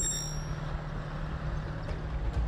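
Otokar Cobra armoured 4x4 vehicle driving, its engine giving a steady low drone with a constant hum.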